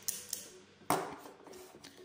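Plastic LEGO bricks clicking and knocking as a small brick-built candy machine is handled: one sharp click about a second in, with a few lighter ticks around it.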